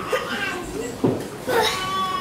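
Children's high-pitched voices in a room, with a drawn-out high cry starting about a second and a half in.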